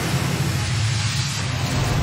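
Newscast transition sound effect: a loud rushing whoosh over a low, steady droning hum, taking over from the jingle music.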